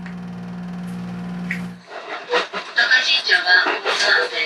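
A train standing at a station gives a steady low hum from its engine and equipment. The train is a JR East HB-E300 series hybrid diesel railcar. The hum cuts off abruptly about two seconds in, giving way to voices and cabin noise.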